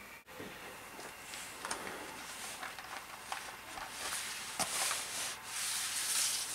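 Paper and cardboard rubbing and rustling as a vinyl record in its paper inner sleeve is slid out of a gatefold cardboard jacket, growing louder over the second half, with a few small clicks.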